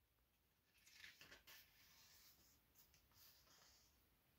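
Near silence, with a faint paper rustle of a picture-book page being turned about a second in.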